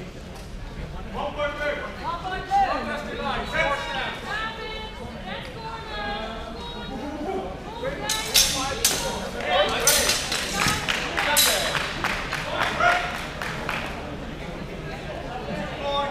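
Steel longswords clashing in a quick flurry of sharp strikes, starting about eight seconds in, over the chatter of voices in a large hall.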